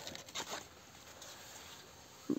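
Faint rustling of cucumber leaves and vines brushing the phone as it moves through the foliage, with a few soft crackles in the first half second, then only a low background hiss.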